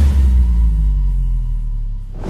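A deep electronic sub-bass boom, a bass drop that swoops down in pitch and then rumbles on low, slowly fading away near the end.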